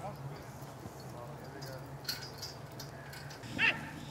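A flock of birds calling in scattered short cries over a steady low hum, with one louder, sharper call near the end.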